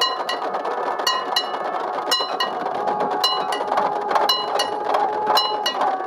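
Metal bells struck in a steady ding-ding pattern, two quick strikes about once a second, over the hubbub of a large outdoor crowd. A long held tone joins in about halfway through.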